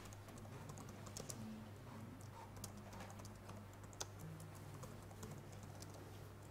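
Faint keystrokes on a computer keyboard: irregular light clicks as a command is typed, over a steady low hum.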